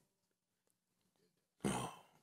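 Near silence, then a person briefly clearing their throat close to a microphone near the end.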